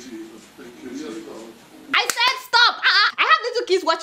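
Speech only: faint, low voices for the first half, then a loud voice from about two seconds in.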